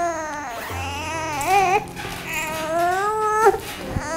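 A six-month-old baby fussing in long, wavering cries, about three in a row, each rising and falling in pitch.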